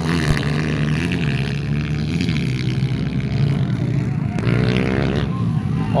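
Dirt bike engines running around the track, the engine note wavering up and down as the riders work the throttle.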